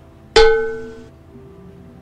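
A single bright plucked or struck musical note, sudden at the start and fading away within about a second, over a faint steady background.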